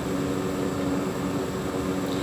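Steady mechanical hum holding several low tones, with a thin high whine and a light hiss over it.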